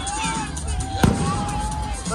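Fireworks going off: one sharp bang about a second in, over a steady high whistle that stops near the end.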